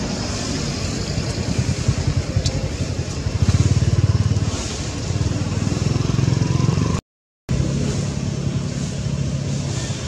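Low rumbling background noise that swells about three and a half seconds in and again near six seconds, cut by a half-second dropout to silence about seven seconds in.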